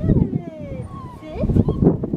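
Six-week-old Australian Shepherd puppy whimpering: a few short, high whines that slide down and up in pitch, over low rumbling noise.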